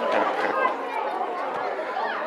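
Small crowd of spectators chattering beside a football pitch, their applause for a goal tailing off in a few last claps in the first half second.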